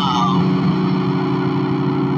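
Music: a distorted electric guitar chord held and sustained, with no new notes struck.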